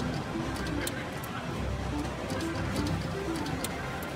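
Video slot machine spinning its reels: short electronic tones repeat every half second or so with small ticks, over a steady casino background hum.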